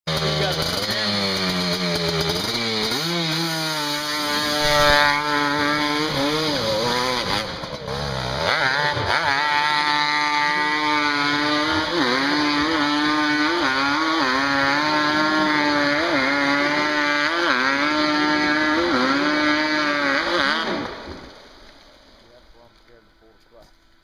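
Two-stroke 250R ATV engine revving hard under load, its pitch rising and falling about once a second as the throttle is worked. The engine sound fades away near the end.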